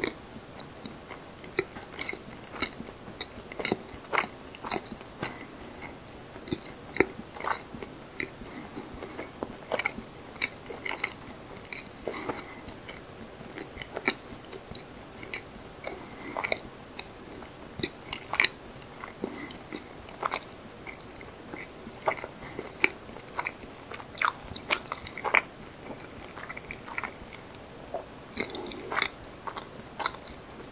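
Close-miked mouth sounds of a person chewing soft, naturally fermented Korean rice cake (jangijitteok), a steady run of short, irregular smacks and clicks.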